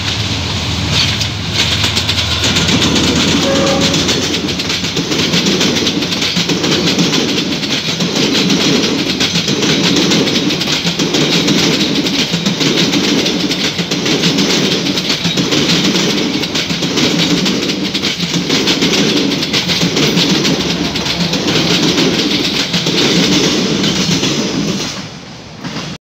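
D19E diesel-electric locomotive running past close by with a low engine hum, then a long rake of passenger coaches rolling over the rail joints with a rhythmic clatter that repeats about once a second. The sound drops off suddenly near the end as the last coach clears.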